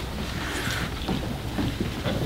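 Steady low hum of room noise in a hearing room, with a brief rustle of papers or clothing about half a second in as someone sits down at the table microphone.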